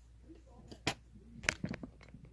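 Small fly-tying scissors snipping flash tinsel: one sharp snip a little under a second in, then a quick cluster of snips about half a second later.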